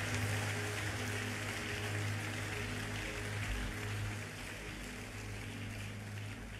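A large congregation clapping and applauding over a soft, sustained keyboard chord. The clapping thins out over the last couple of seconds.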